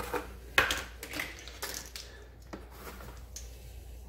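A few light clicks and clinks, the sharpest about half a second in: a glass spice jar and measuring spoons being handled and the jar opened over a stainless steel mixing bowl.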